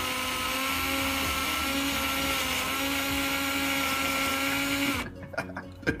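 Black+Decker cordless drill running at a steady speed with a whine, spinning a potato on its bit against a hand peeler that shaves off the skin. It stops suddenly about five seconds in.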